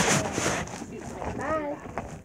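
Hands scooping and shuffling a pile of small plastic toy figures, rustling most in the first half second. A short bit of voice comes about one and a half seconds in.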